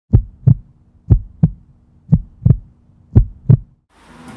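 Heartbeat sound: four deep lub-dub double thumps, about one pair a second.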